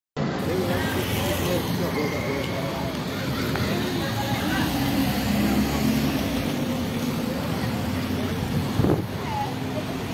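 Street traffic: cars and motorcycles running slowly along a town street, with people's voices talking indistinctly in the background and a brief knock near the end.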